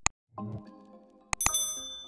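Subscribe-button sound effect: two mouse clicks, then about a second and a half in two more clicks and a bright bell ding that rings and fades, over light background music that begins about half a second in.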